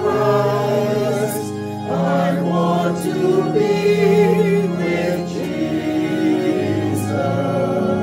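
Mixed choir of men and women, recorded separately and combined, singing a slow gospel hymn with long held notes: the third verse, "I'm looking for the coming of Christ, I want to be with Jesus."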